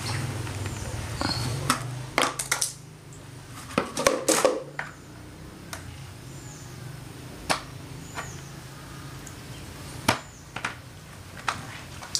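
Plastic parts of a hanging chicken feeder being handled and fitted together: scattered clicks and knocks of hard plastic against plastic, busiest about two to four seconds in, over a steady low hum.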